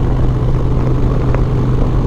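Harley-Davidson Road Glide's V-twin engine running at a steady cruise, a constant low drone mixed with the rush of wind and road noise.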